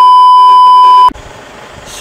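Television colour-bars test tone: one loud, steady single-pitch beep lasting about a second that cuts off suddenly, leaving only low background noise.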